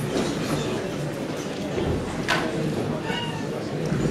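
Indistinct murmur of voices and rustling in a concert hall, with a sharp knock a little past two seconds and a brief high squeaky tone just after three seconds.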